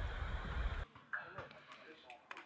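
Faint voices over a low outdoor rumble that cuts off abruptly just under a second in, followed by near silence with one brief faint voice.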